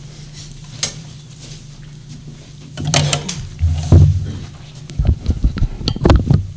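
Handling noise on a podium microphone: knocks and low thumps as a folder is set on the wooden lectern and the gooseneck microphone is grabbed and bent into place. The loudest thump comes about four seconds in, and a quick run of clicks and bumps follows near the end.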